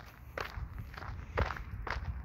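Footsteps of a person walking across grass, four separate steps.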